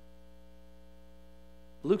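Steady electrical mains hum with a row of evenly spaced overtones, unchanging in level; a man's voice begins a word near the end.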